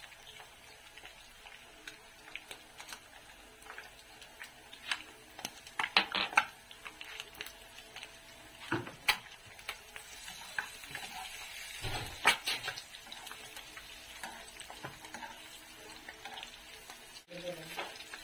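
Eggs frying in oil in a nonstick pan with a faint steady sizzle. A plastic spatula scrapes and knocks against the pan several times, loudest about six seconds in and again about twelve seconds in.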